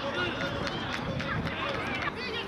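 Children's voices shouting and calling out on a football pitch, several short high-pitched calls overlapping.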